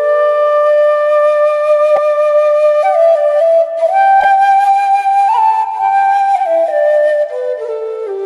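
Slow solo flute melody of long held notes that step up and then back down in pitch, played as a music bed.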